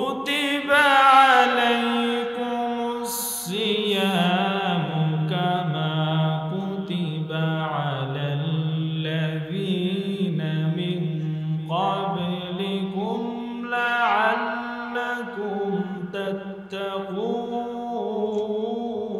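A man reciting the Quran in Arabic in a melodic, chanted style, holding long ornamented notes and pausing briefly for breath between phrases.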